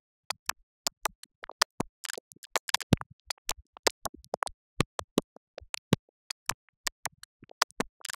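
The transient layer of an Afro R&B song, split out by iZotope RX 11's Deconstruct module with tone and noise removed: a string of short, dry clicks and hits, several a second, with silence between them.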